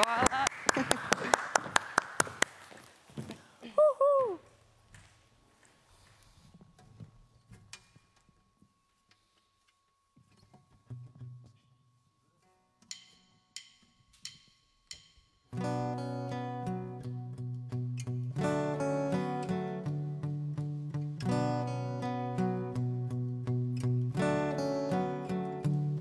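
Steel-string acoustic guitar with a capo playing the opening chords of a live song, starting about fifteen seconds in. Before it comes a long, nearly quiet pause broken by four evenly spaced clicks. Brief clapping at the very start.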